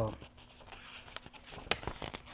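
Pages of a picture book being handled and turned: a few soft, short paper rustles and taps, the sharpest a little after the middle.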